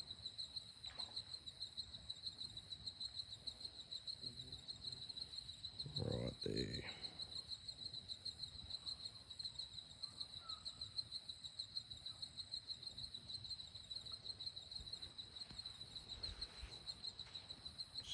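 Faint, steady chorus of night insects: a high-pitched chirring that pulses on without a break. A brief low sound comes about six seconds in.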